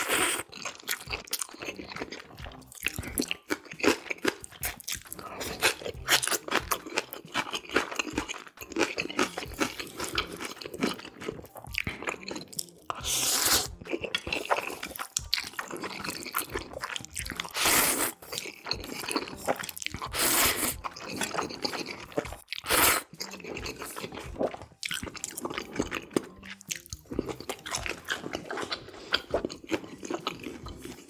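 Close-miked slurping and chewing of black-bean-sauce instant noodles (jjajang ramyeon). Wet chewing clicks run throughout, with several louder slurps spread through.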